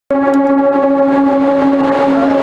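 Conch shell blown as a horn: one steady, held note that starts suddenly, echoing off the rock walls of a sea cave.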